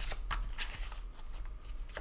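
Tarot cards being shuffled by hand: an irregular run of short, crisp card flicks.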